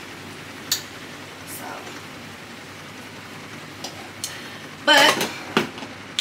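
Ground beef sizzling steadily in a skillet while a spatula stirs it, with a few light clicks and scrapes. About five seconds in, a louder clatter as a lid is set on the pan.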